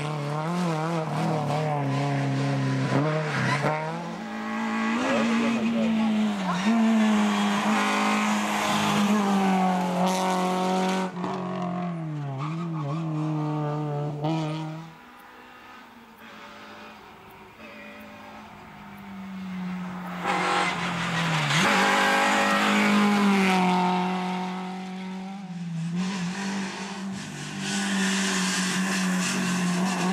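Renault Clio rally car engine at high revs, revving up and dropping back repeatedly through gear changes as it passes close by. In the middle it fades to a distant car approaching, then it is loud again on another pass.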